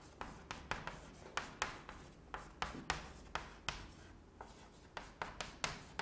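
Chalk writing on a blackboard: an irregular run of short taps and scrapes, several a second, as words are written out stroke by stroke.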